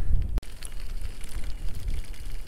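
Wind noise on the microphone: a steady low rumble, with one sharp click about half a second in.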